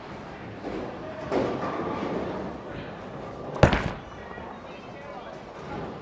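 A single sharp thud about three and a half seconds in as a Storm Night Road bowling ball is delivered onto the wooden lane, over the steady background noise of a bowling alley.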